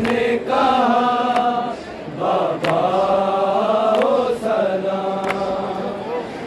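Men's voices chanting an Urdu noha, a Shia mourning lament, in a held, melodic line. Sharp beats come about every second and a bit, keeping the noha's matam rhythm.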